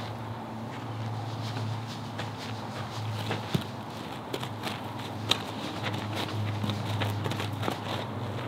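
Footsteps of a person and a horse on a gravel paddock: irregular light crunches and clicks over a steady low hum.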